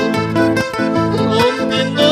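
Instrumental passage of a slow Andean song: accordion carrying the melody over rhythmically strummed acoustic guitars.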